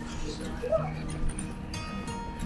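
Street musicians' music playing, with sustained low notes, voices and a short rising cry about three-quarters of a second in.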